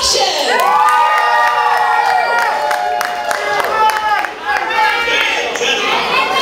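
Audience cheering and screaming, several high-pitched voices holding long overlapping shouts, strongest in the first couple of seconds.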